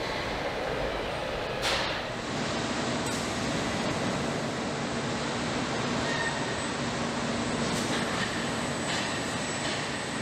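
Steady machine noise of an automated car-body stamping press line, with a short hiss about two seconds in.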